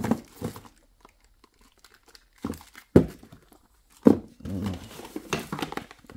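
Cardboard and plastic packaging being handled: short crinkles and rustles, with a sharp snap about three seconds in.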